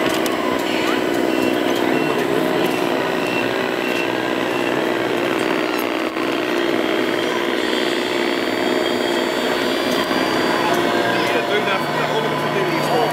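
Small electric motors and gearing of a radio-controlled model truck mixer running with a steady whine, with a thin high tone joining about halfway through, over background chatter.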